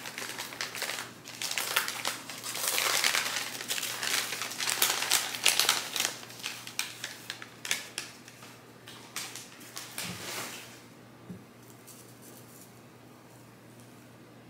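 Brown kraft paper wrapping crinkling and rustling as it is opened and pulled away from a shipped plant, busiest for the first eight seconds and dying away after about ten seconds.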